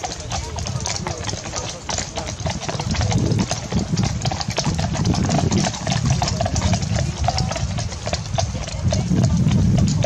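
Hooves of a group of horses walking and trotting on grass, many irregular hoof strikes close by, over a low rumble that grows stronger near the end.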